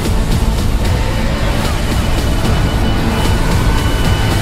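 Film sound effects of a spacecraft shaking: a loud, steady, deep rumble with rapid, irregular rattling clicks, under trailer music.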